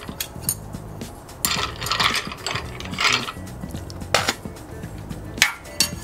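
Ice cubes clinking against a glass mixing glass as a metal bar spoon stirs them, in irregular clinks about once a second: a stirred cocktail being diluted over ice.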